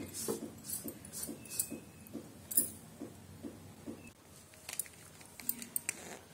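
Faint light taps and handling noises, about two or three a second, from a silicone spatula patting soft coconut barfi into a metal tray, with a few sharper clicks near the end.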